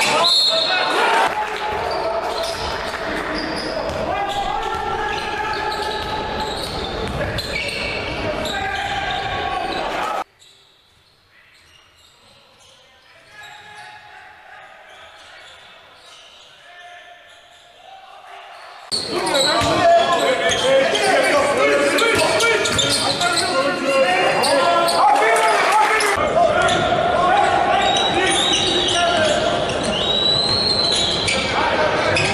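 Game sound from a basketball arena: a ball bouncing on the hardwood and voices echoing in the large hall. It drops abruptly to a faint murmur for about nine seconds in the middle, then comes back just as loud.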